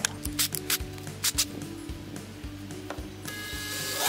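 Cordless drill boring a 13/16-inch hole through a plastic kayak hull: the motor whines and the bit grinds from about three seconds in to the end. A few light clicks come before it, over steady background music.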